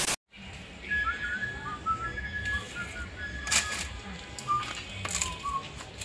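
Faint high whistling: one held note with a few short sliding chirps below it, over a low background rumble, with a couple of brief clicks.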